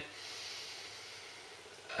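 A person taking a slow, deep in-breath, a faint steady hiss of air that fades gradually.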